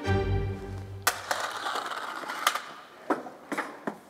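A chain-reaction contraption set off under a dramatic music sting with a low boom. A sharp knock comes about a second in, then a short mechanical rattle from the slot car, then several separate wooden clacks as the first dominoes topple.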